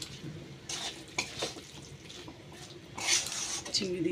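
A metal spatula scraping and stirring a thick banana-flower and prawn mixture around a metal kadai, in irregular strokes. There is a longer run of scrapes near the end.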